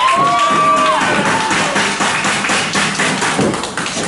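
A voice shouts one long held call for about a second, then a run of irregular taps and thumps from wrestlers' feet and bodies on the ring canvas.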